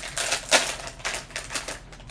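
Foil blind bag crinkling and tearing as it is opened by hand: a dense run of crackles, the sharpest about half a second in, easing off near the end.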